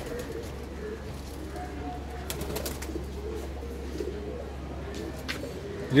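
Domestic pigeons cooing in a loft, many low overlapping coos throughout, over a steady low hum.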